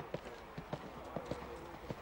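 Hoofbeats of a show-jumping horse cantering on sand arena footing: a run of irregular knocks, several a second.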